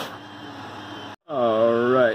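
A 3D printer running faintly and steadily. After an abrupt cut, a man's voice holds a long, drawn-out 'uhh' in the second half.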